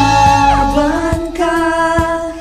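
Tagalog worship song playing: a singer holds one long note over the band's accompaniment, with a short falling slide in the backing about half a second in.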